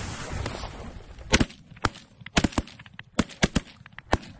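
A volley of shotgun shots from several hunters firing at ducks: about eight to ten sharp cracks, loud and fainter ones overlapping, starting about a second and a half in. Before them comes about a second of rushing noise.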